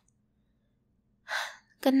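Silence, then about a second and a quarter in a woman's short, breathy intake of breath, just before she starts to speak softly.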